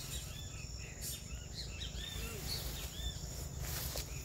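Outdoor insects trilling steadily at a high pitch, with many short chirps over them and a low rumble underneath; a brief rustle of noise near the end.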